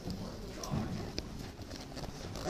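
Footsteps on a hard floor: a few irregular knocks, with faint voices behind them.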